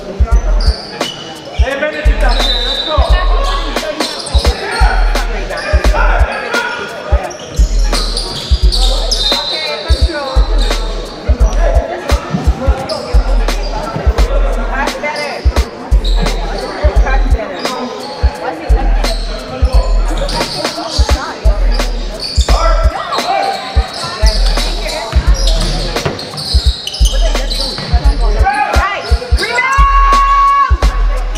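A basketball bouncing on a hardwood gym floor during play, with voices and music with a steady, heavy bass beat over it.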